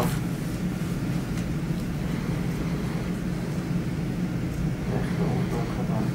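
Steady low machine hum, with faint speech near the end.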